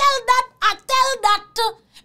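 A woman talking in Haitian Creole, in several short, quick phrases.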